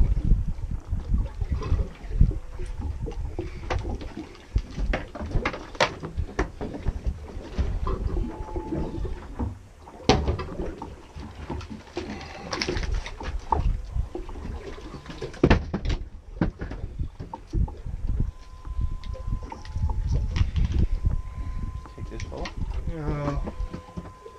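Wind rumbling on the microphone and water against a small boat's hull, with scattered knocks and clatter on deck as a fish is reeled in, landed and handled. A faint steady high tone comes in for the last few seconds.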